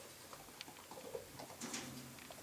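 Faint scattered clicks and scratches of pet chinchillas moving about on a laminate floor and wooden furniture, with a small cluster of louder scrabbling near the end.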